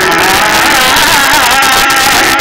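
Loud live gondhal folk music: a wavering, ornamented melodic line over a dense, noisy accompaniment.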